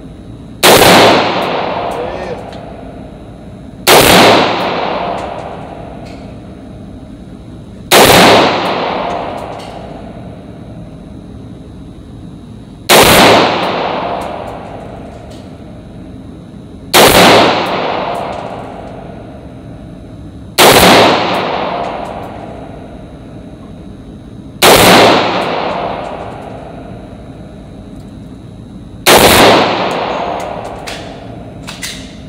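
AR-style rifle fired in slow, deliberate single shots, eight in all, spaced about three to five seconds apart, each crack followed by a long echoing decay in the enclosed indoor range.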